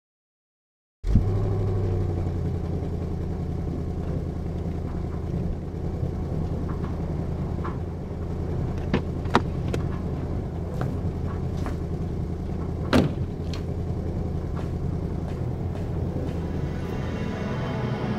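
A low, steady rumble that starts abruptly about a second in, with a few sharp clicks and knocks around the middle.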